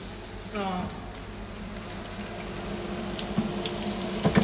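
Potato and parsnip latkes shallow-frying in butter and sunflower oil in a stainless steel pan: a steady sizzle with a few faint pops.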